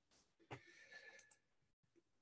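Near silence: a pause between spoken sentences, with one faint brief sound about half a second in.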